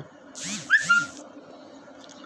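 Smartphone notification tone from an incoming Facebook Lite notification: a short two-part chirping sound about half a second in, lasting under a second.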